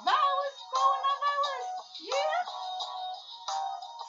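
A woman singing unaccompanied, her voice swooping up in pitch at the start and again about two seconds in, in a small room.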